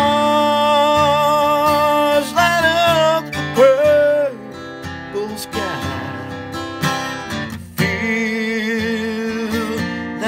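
A man singing a slow country song to his own strummed acoustic guitar, holding long notes. The music drops quieter for a few seconds midway, then the voice comes back in.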